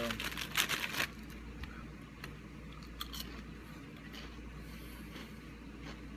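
Clear plastic bag crinkling as it is handled, loudest during the first second, then a few faint scattered crackles.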